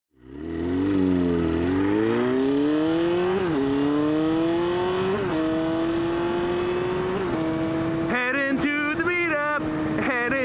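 Honda CBR sportbike engine accelerating and shifting up through the gears, its pitch climbing and then dropping at each of four shifts. Near the end a man's voice comes in over the engine.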